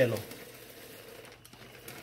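Wheat grains poured from a paper bag into an Oster blender jar, a faint steady pattering of grain on grain and jar.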